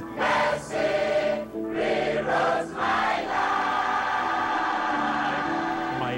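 Large gospel choir singing in several-part harmony, settling into long held chords in the second half.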